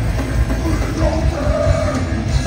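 Punk rock band playing live and loud: electric guitars, bass and drums, with the lead vocal coming in about a second in.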